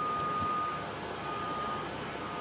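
An electronic beep repeating about once a second, each beep a single steady tone lasting about half a second.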